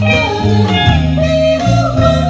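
Live amateur band playing a song: two voices singing with electric guitar, electric bass and a drum kit, cymbals ringing.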